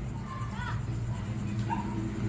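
Faint background music with a dog barking or yipping a couple of times, short faint calls about half a second in and again near the end.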